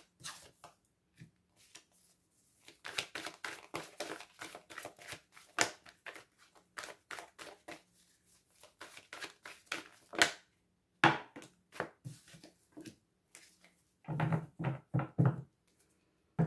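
A deck of oracle cards shuffled by hand: a rapid run of soft card clicks for several seconds, then a few more scattered clicks. Near the end, a few duller, louder knocks as cards are set down on the wooden table.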